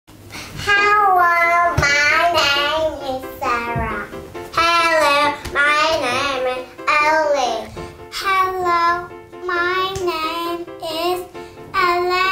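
Young children's high voices in turn, in short sing-song phrases over background music.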